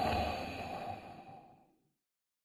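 A short, breathy sound like an exhale that starts suddenly, fades away over about a second and a half, and ends in silence.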